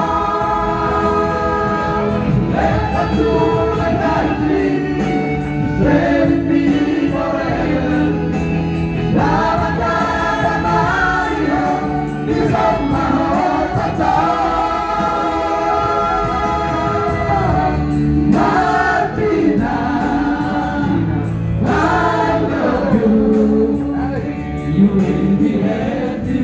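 Several men singing together through microphones over amplified music accompaniment, a steady loud song with changing sung phrases.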